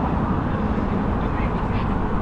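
Wind rushing over a handlebar-mounted action camera's microphone while cycling, a steady low rumble with no clear breaks.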